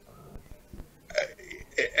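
A pause in a man's talk, then a short throaty vocal sound a little over a second in, and his speech starting again near the end.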